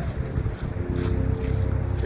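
Wind buffeting the microphone, a steady low rumble, with faint music underneath.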